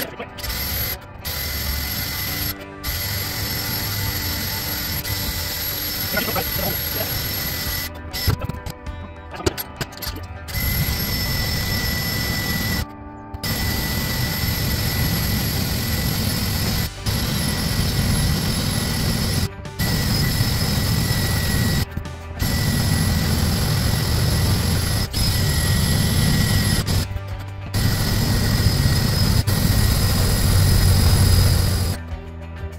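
Cordless drill running a long twist bit through the sheet-metal roof panel of a 2023 Ford F-150, in repeated runs with short stops between. It runs louder and heavier from about ten seconds in as the bit bears into the metal.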